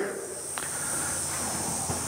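Steady hiss of background noise in an empty, unfinished room, with a couple of faint taps about half a second in and near the end.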